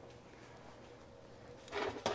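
Quiet workshop room tone with a faint steady hum, and a brief soft knock near the end.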